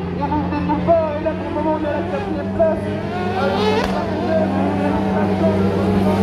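Kart cross buggies racing on a dirt track, their engines heard over the track, with one revving sharply upward about halfway through. A public-address announcer's voice runs over it.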